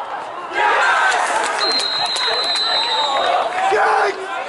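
A referee's whistle blown in one long steady blast of nearly two seconds, starting about one and a half seconds in, over excited shouting from the touchline. With seconds left and the home side one goal up, it is the full-time whistle.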